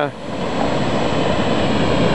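Steady rushing of a lot of water pouring through a dam spillway.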